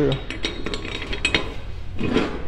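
A steel hitch pin sliding through the holes of a steel hitch reducer sleeve and square tubing, with an irregular run of small metal clinks and scrapes as the pieces knock against the metal workbench.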